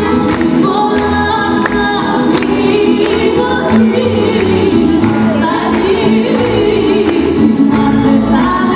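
Live rembetiko music: a band of bouzoukis, acoustic guitars and double bass playing steadily, with singing over it.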